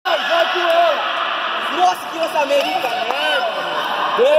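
Several voices calling and shouting over one another in a sports hall during a handball game, one of them yelling "Vem! Você volta!" to the players.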